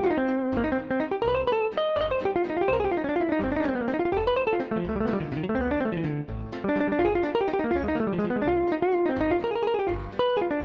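General MIDI jazz electric guitar playing quick single-note runs in C minor over chords such as Cm, CmMaj7, G7 and Dm7, with regular low notes underneath.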